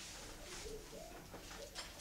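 Faint low cooing from a bird, a few short notes about half a second to a second in, over quiet room tone.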